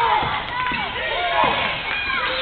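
Live basketball game sound in a gym: a ball dribbled on the hardwood court, with scattered voices of players and spectators.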